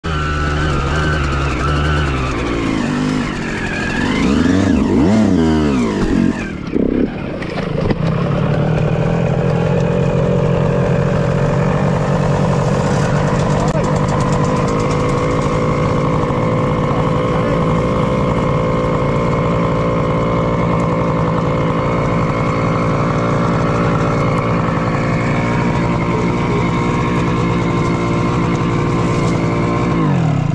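Yamaha YZ125 two-stroke single-cylinder dirt bike engine revving up and down for the first few seconds. After a brief drop about seven seconds in, it runs on steadily at one speed while the bike lies on its side.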